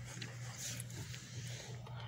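Faint background noise of a home narration recording: a steady low hum under a soft hiss, with a few faint ticks.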